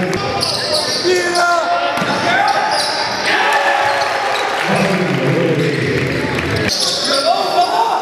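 Basketball game sound in a gymnasium: a basketball bouncing on the hardwood court, with voices in the hall.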